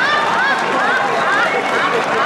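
Audience laughing and applauding, a dense wash of many voices and clapping in reaction to a joke's punchline.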